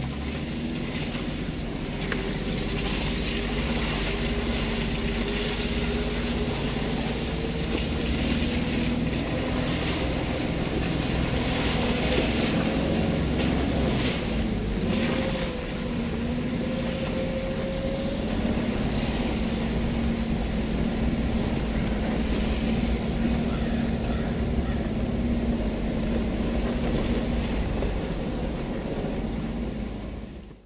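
Jeep engine running steadily as the vehicle drives slowly along a dirt trail, with a low rumble under it; the engine note rises a little about midway through.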